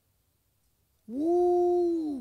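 A person's voice holding one drawn-out tone: after a moment of quiet it slides up into a steady held note for about a second, then slides down and fades.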